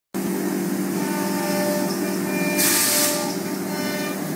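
MultiCam M Series CNC router running, its spindle and drives giving a steady drone with a few steady tones, as it cuts grooves into a sheet of board. A short burst of hiss comes about two and a half seconds in.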